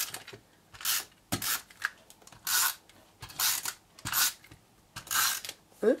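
Stampin' Up! SNAIL adhesive tape runner laying strips of double-sided adhesive onto the backs of cardstock panels: about six short strokes, roughly one a second.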